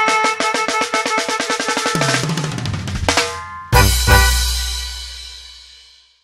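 A live band with a drum kit plays the closing flourish of a zapateado. Rapid repeated melody notes over the drums lead into a drum roll and a short stab, then a loud final chord with a drum hit that rings out and fades away.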